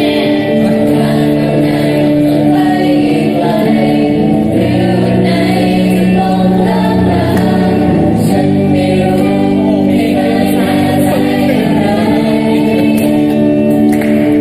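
A group of voices singing a slow, sentimental song together in chorus, with acoustic guitar accompaniment.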